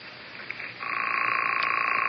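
A telephone ring heard down the line through the handset: a single buzzy ring starts about a second in and lasts just over a second, after a faint click. It is the call going through to the other party, who answers shortly after.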